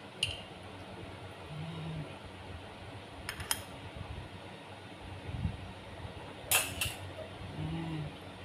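A metal spoon clinking against a small glass jar of red bean curd sauce as the sauce is scooped out: a few scattered sharp clinks, the loudest two in quick succession near the end.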